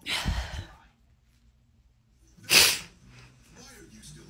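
Two short, loud bursts of a woman's breath through the nose and mouth, about two seconds apart; the second is the louder and sharper.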